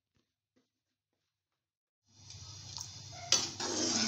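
Silent at first; about halfway through, a steady hiss with a low hum begins. About a second later a metal slotted spoon knocks against the aluminium pot and stirs rice through boiling water, with a rough scraping, sloshing clatter.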